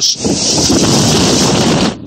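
Hurricane-force wind of Hurricane Irma with storm surf surging: a loud, dense rush of wind and water with heavy wind buffeting on the microphone. It cuts in just after the start and stops abruptly just before the end.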